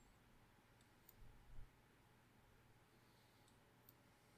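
Near silence with a few faint computer mouse clicks, two about a second in and two near the end, as the chart replay is stepped forward, and a soft low thump about a second and a half in.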